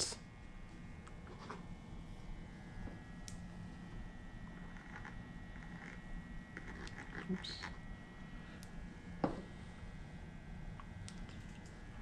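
Faint handling noises as small engine parts and a plastic Loctite bottle are worked by hand: scattered light clicks and taps over quiet room tone with a low steady hum, the clearest clicks about seven and nine seconds in.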